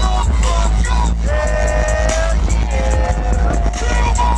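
Loud live dubstep played through a large festival sound system: deep, heavy bass under a held synth line that bends in pitch, with a steady beat.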